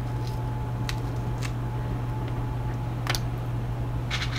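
A steady low hum runs under a few faint, brief clicks from hands pressing whole cloves into a peeled onion.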